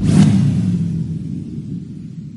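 Logo-animation sound effect: a sudden whooshing hit, then a low rumble that fades away steadily over about two seconds.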